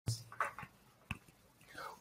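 A man's faint mouth clicks and a soft breath just before he starts speaking: a few brief clicks in the first second, then an intake of breath near the end.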